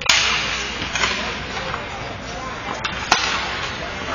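Ice hockey faceoff: a sudden loud clack of sticks as the puck is dropped, then skate blades scraping the ice as play breaks away. A single sharp crack about three seconds in.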